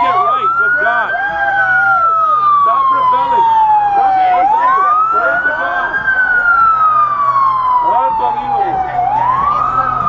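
A siren wailing, its pitch rising over about a second and a half and then falling slowly for about three seconds, the cycle repeating about every four and a half seconds and starting a third rise near the end, over a crowd's shouting voices.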